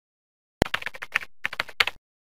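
Computer keyboard typing: a rapid run of keystroke clicks starting about half a second in, with a brief pause in the middle, then stopping abruptly.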